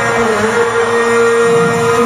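Live arena concert sound: a long held note sits steady over the music, with a small dip in pitch just after it begins.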